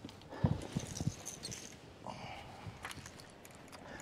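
Light knocks and clicks of fishing rods and lures being handled on a boat deck, mostly in the first second or so, with a few fainter rattles after.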